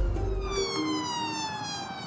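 Ambulance siren, one long wail falling steadily in pitch.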